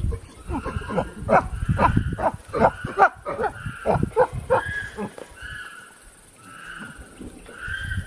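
Chimpanzees calling: a rapid run of loud, sharp calls through the first five seconds, then dying down to quieter calls.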